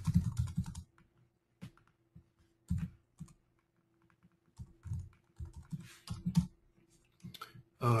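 Computer keyboard typing: irregular keystroke clicks with a few heavier thumps, over a faint steady hum.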